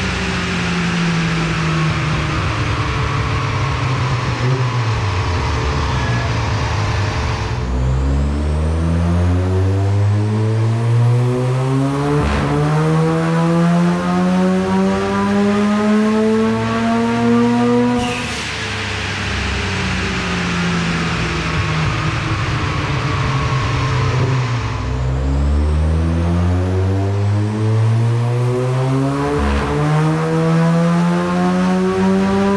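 Mazda RX-7 FD's turbocharged twin-rotor rotary engine under load on a chassis dyno. Its revs fall away, then a full pull climbs steadily in pitch for about ten seconds and cuts off sharply. The engine winds down and a second pull begins near the end.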